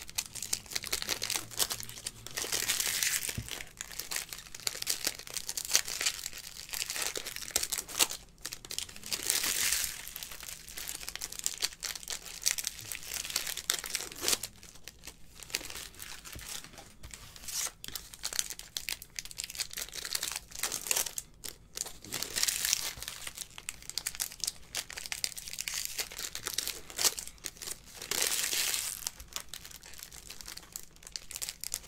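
Trading-card pack wrappers crinkling and tearing open, mixed with the light clicking of a stack of cards being handled and flipped through. The crinkling gets louder several times, each for about a second.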